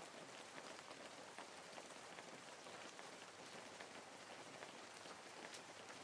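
Faint, steady rain falling, a soft hiss with many small irregular drop ticks.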